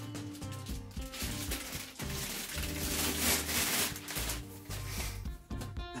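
Background music, with plastic wrapping crinkling loudest about halfway through as it is pulled off a boxed power inverter.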